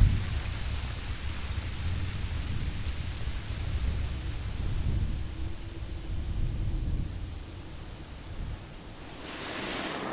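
Low rumble and hiss of loose snow sluffing down a steep face, easing off after about seven seconds.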